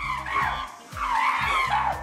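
Chimpanzees screaming in a scuffle: two long, wavering shrieks, the second a little after a second in, over a steady background music bed.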